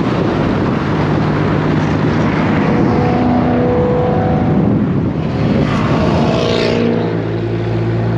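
Dodge Viper SRT-10's V10 engine driving at road speed, heard through heavy wind and road noise on an outside-mounted camera. Near the end the wind noise drops back and the engine settles into a steady low drone.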